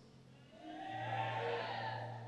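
A soft sustained keyboard chord, like a church organ pad, swells in about half a second in and then begins to fade.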